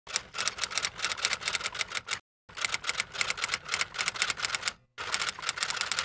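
Typewriter keystroke sound effect: rapid clicking keystrokes, about eight a second, with two brief pauses, about two seconds and about five seconds in.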